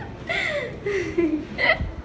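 A few short, wordless voice sounds: excited gasps and giggles, some falling in pitch.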